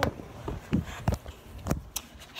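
Handling noise from a phone being moved and covered: a string of dull knocks and rubs against the microphone, about five in two seconds.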